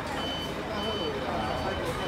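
A tour coach's reversing alarm beeping steadily, a short high beep repeating a little under twice a second, over the low rumble of the coach's engine.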